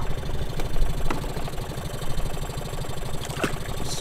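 Small tiller outboard motor running steadily at trolling speed, a low even throb, with a couple of faint light knocks.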